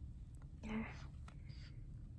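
Quiet room with one soft, whispered "yeah" a little past half a second in.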